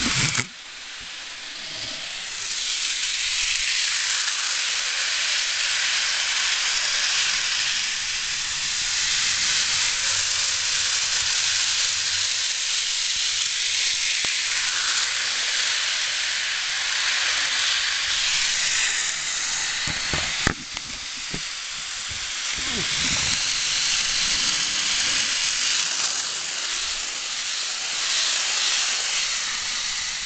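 Model passenger train running on its track, with a steady hissing rattle from its motor and wheels. A sharp click comes about twenty seconds in, followed by a brief dip in the noise.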